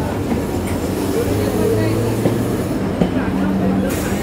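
Electric EMU local train rolling slowly alongside another train's coaches: steady wheel-and-rail rumble with a low electric hum and a few sharp clicks from wheels over rail joints or points.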